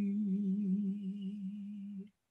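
A woman singing unaccompanied, holding one long low wordless note with a slight waver.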